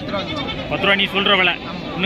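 Young goat bleating with a wavering cry about a second in, over people talking.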